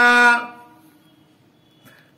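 A man's voice speaking in an even, drawn-out intonation trails off about half a second in, followed by a quiet pause with a faint short sound near the end.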